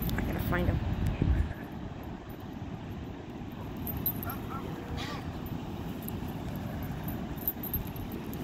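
Steady low outdoor rumble of wind and surf on a phone microphone, louder for the first second and a half, with a few faint distant voices or calls.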